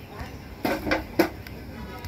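Large wire balloon whisk working flour into cake batter in a steel bowl, with three short knocks of the whisk against the bowl around the middle.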